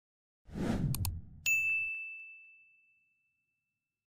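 Subscribe-button pop-up sound effects: a short whoosh, two quick clicks, then a single high bell ding that rings on and fades over about two seconds.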